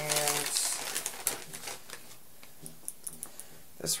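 Small clicks and rustles of cosmetics and packaging being handled in a cardboard box. They are busiest in the first couple of seconds, then fall to a few faint ticks, after a brief hummed voice sound at the start.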